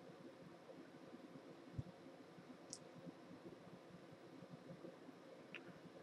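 Near silence: room tone, with one faint soft knock about two seconds in and a couple of tiny high ticks.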